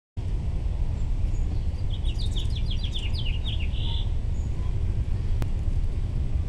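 A small songbird singing a quick run of chirps about two seconds in, lasting around two seconds, over a steady low rumble of outdoor noise. A single sharp click comes near the end.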